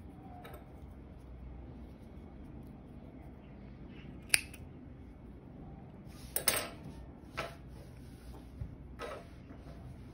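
Small thread snips cutting cotton yarn ends: a few short, sharp snips spaced a second or two apart.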